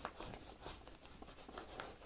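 A pen scratching on the paper of a printed exam workbook in a series of short, faint strokes, as a question is marked.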